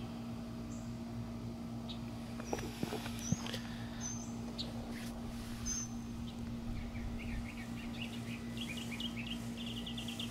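Birds chirping over a steady low hum, with a quick run of repeated chirps in the last few seconds.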